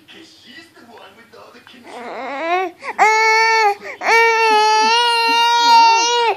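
Six-month-old baby crying: fussing sounds build up about two seconds in, then break into two long, loud wails, the second lasting about two seconds.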